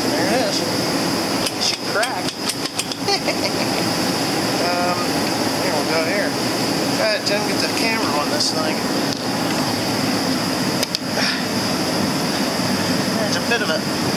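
Metal tools clinking and knocking against a tractor transmission housing as a stuck part is pried at. A quick run of taps comes about two to three seconds in and another knock later on, over a steady background hiss.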